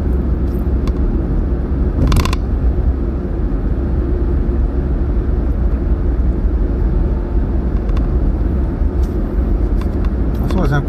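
Steady low rumble of tyres and engine heard from inside a car's cabin while it drives at expressway speed. A short, sharp hissing crackle comes about two seconds in.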